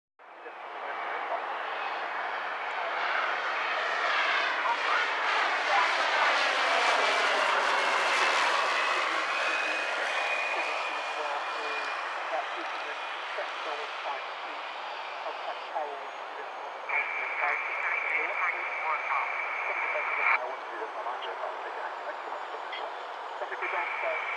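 A twin-engine Diamond DA42 Twin Star with its propeller engines running passes close by on landing, gear down. The engine noise swells, sweeps in pitch as the aircraft goes by at its loudest, then slowly fades.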